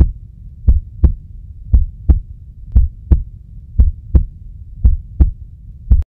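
Heartbeat sound effect: paired lub-dub thumps repeating about once a second over a low hum.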